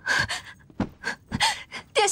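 A woman's quick, gasping breaths as she hurries in, a short burst every few tenths of a second, with a couple of soft thuds in the middle. Right at the end she breathlessly says '殿下' (Your Highness).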